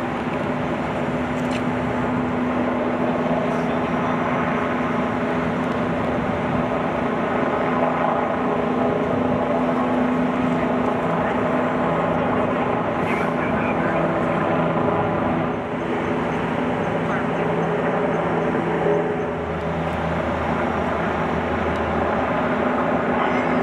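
Heavy-duty rotator tow truck's diesel engine running steadily, an even low drone whose note shifts slightly near the end.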